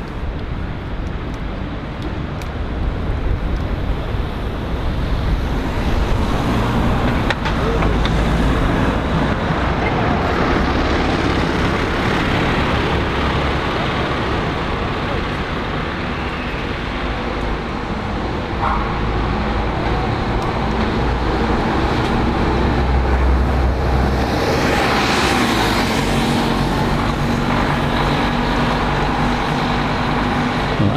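City street traffic: buses, lorries and cars running and passing, a continuous rumble of engines and tyre noise that swells as vehicles go by, most strongly about 25 seconds in. Near the end a bus engine draws closer.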